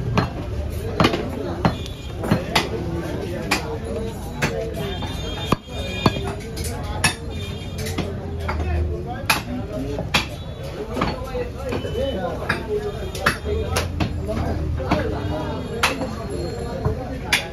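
A heavy curved butcher's chopper striking beef and a wooden log chopping block, with sharp chops coming irregularly about once a second.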